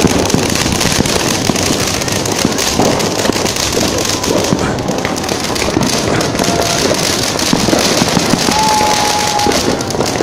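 Ground fountain fireworks spraying sparks, with a steady, dense crackling hiss.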